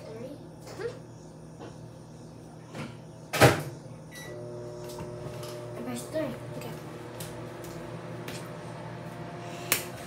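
Microwave oven being shut and started: the door closes with a loud clack about a third of the way in, a short keypad beep follows, and the oven then runs with a steady hum.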